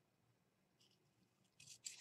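Near silence, then a few short, faint snips of small scissors cutting thin cardstock near the end.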